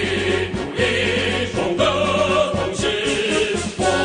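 A large group of voices singing together in unison over music accompaniment.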